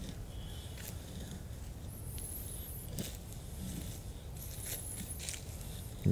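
Fixed-blade knife shaving curls down a thin wooden stick to make a feather stick: faint scraping strokes with a few light clicks.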